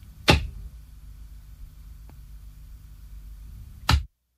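Two loud, sharp knocks about three and a half seconds apart over a low steady hum, with a faint tick between them.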